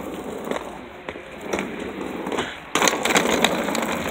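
Hard-shell suitcase's wheels rolling and clattering over concrete, getting louder about two-thirds of the way in.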